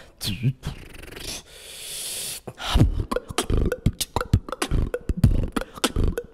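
Beatboxer's voice: a short laugh, then a rising hiss, and about three seconds in a fast beatbox pattern starts, dense sharp mouth percussion with deep kick-like thumps.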